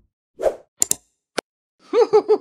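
Editing sound effects: a soft pop about half a second in, then two sharp mouse-click sounds, and a cartoon-style laugh beginning just at the end.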